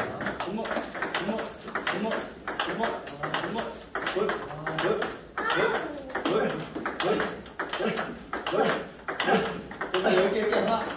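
Table tennis ball being hit in a steady rally during a training drill, sharp paddle and table clicks a few times a second, with a voice calling over the hits.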